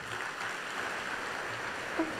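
Audience applauding steadily after a speech ends.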